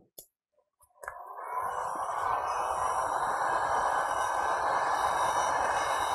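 Electric heat gun switched on about a second in, its fan spinning up with a short rising whine and then blowing steadily on low speed over a cup of freshly mixed epoxy resin to pop the bubbles.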